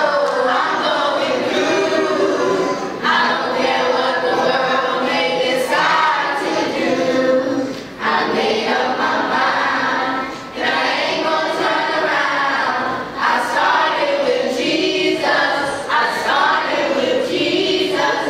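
Children's choir singing unaccompanied, a cappella voices through microphones, in phrases of a few seconds with brief breaks between them.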